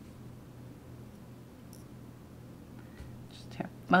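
Quiet room tone with a steady low hum, and a few faint light ticks about three seconds in.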